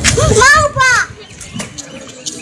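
A high-pitched voice calls out twice in quick succession in the first second, each cry rising and falling in pitch, then things go quieter.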